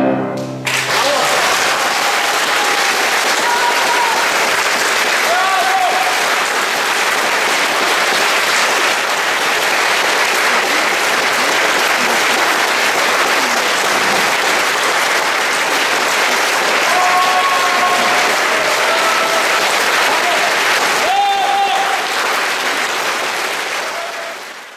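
The final chord of a piano quintet (piano, two violins, viola and cello) stops about half a second in, and the audience breaks into loud, steady applause, with a few voices calling out among the clapping. The applause begins to fade near the end.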